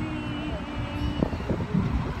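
Low rumbling noise with wind buffeting the microphone of a phone carried on a moving amusement ride. Faint voices sound in the first second, and a few light knocks come about a second in.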